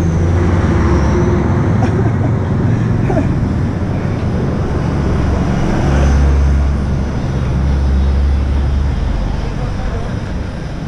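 A motor vehicle's engine running close by: a steady low rumble with road traffic noise, swelling about six seconds in and easing near the end.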